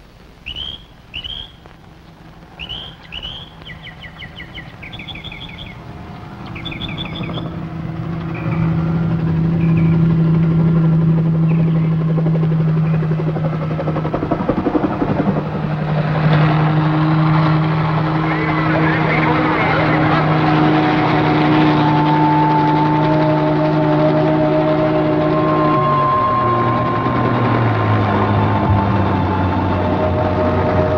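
Birds chirping in short rising calls for the first several seconds. Then a helicopter's engine and rotor come in and grow louder, run steadily, and drop in pitch near the end as it passes.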